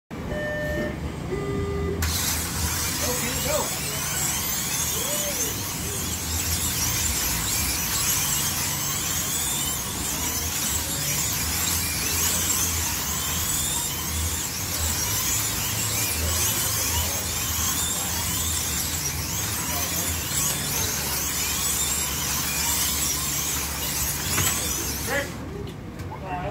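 Slot cars' small electric motors whining together around the track, each pitch rising and falling as the cars speed up down the straights and brake for the corners, with the whirr of tyres and pickups on the slotted track. A few short electronic tones sound in the first two seconds, before the cars take off, and the whining cuts off suddenly near the end as track power drops.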